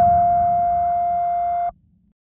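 A single steady electronic tone, slowly fading, that cuts off abruptly near the end.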